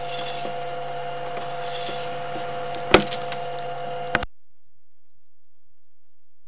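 Steady electrical hum from a sewer inspection camera rig while its push cable is reeled back, broken by a few sharp clicks about three and four seconds in. The sound then cuts off abruptly just after four seconds.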